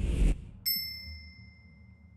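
Logo sting sound effect: a low whooshing swell dies away about a third of a second in. Then a single bright chime strikes and rings on, fading slowly.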